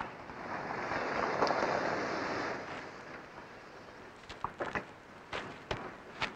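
A car driving away, its road noise swelling for about two seconds and then fading, followed by a few sharp clicks and knocks.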